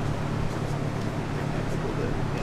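A steady low hum with an even background hiss and no distinct knocks or clanks.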